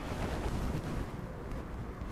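Steady low rumble of wind on the microphone, with no distinct events.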